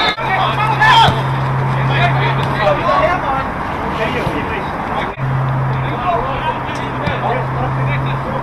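Football match sound from the touchline: players' distant shouts and calls over a steady outdoor noise, with a steady low hum underneath. The sound breaks off briefly about five seconds in, where one clip cuts to the next.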